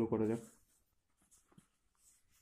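A man's voice says a brief word at the start, then faint light ticks of a pen on paper.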